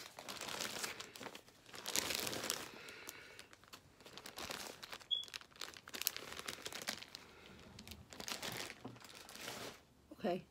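Clear plastic bag crinkling as it is handled, in irregular spells of rustling.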